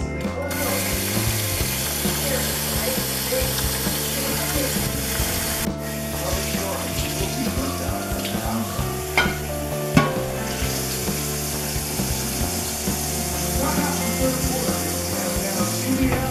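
Kitchen tap running into a stainless steel sink while dishes and a pan are rinsed, the water starting about half a second in and briefly dropping out near the middle, with two sharp clinks of dishware a little later. Background music with a steady beat plays underneath.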